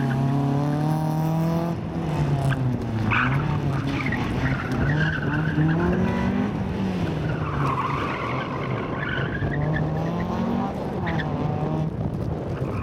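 Honda Civic hatchback's four-cylinder engine revving up and down through the corners of a tight slalom, its pitch rising and falling several times. Tyres squeal in several bursts, the longest near the end.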